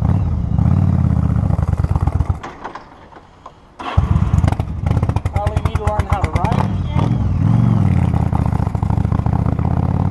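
Yamaha Star motorcycle engine running as the bike pulls away and rides down the street. About two and a half seconds in the sound drops away, then about four seconds in it comes back suddenly at full level with a quick, even beat of firing pulses.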